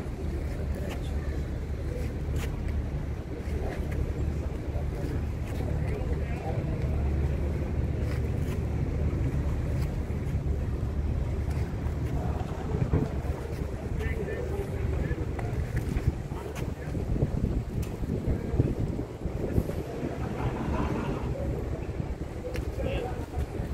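Wind buffeting the phone's microphone: a steady, uneven low rumble, with faint voices of people nearby.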